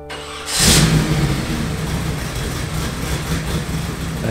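Supercharged drag car's engine, fed through a GMC 6-71 blower, firing up with a loud burst about half a second in and then running steadily at idle.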